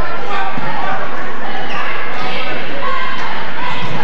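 Basketball bouncing on a gym's hardwood floor as a player dribbles it up the court, with spectators talking nearby in the echoing gymnasium.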